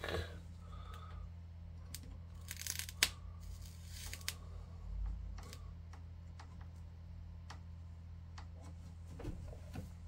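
Soldering iron working on N-gauge model railway rails: scattered small clicks and taps of the tip and solder on the metal track, with a short crackle about two and a half seconds in and a sharper click just after, over a steady low hum.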